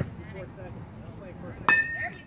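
A metal baseball bat strikes a pitched ball near the end: one sharp crack with a short, high ringing ping, a solid hit.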